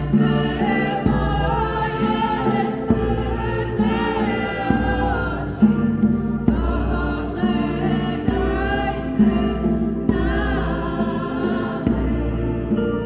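A small mixed vocal ensemble singing a Serbian folk song in several parts, accompanied by keyboard and a hand drum.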